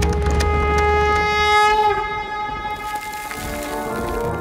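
Dramatic background score: one long, loud horn-like note held over a low drone. The drone stops about a second and a half in, and the note bends down and fades soon after, leaving softer sustained music.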